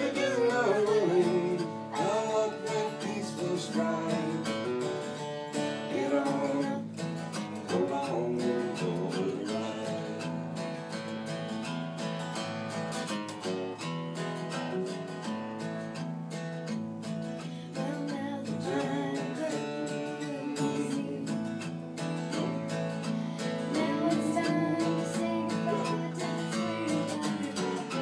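A country song played live on acoustic guitar, strummed and picked, with a voice singing in places.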